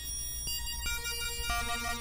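Waldorf Blofeld synthesizer holding sustained tones over a low steady drone, with new pitches entering about half a second, one second and one and a half seconds in.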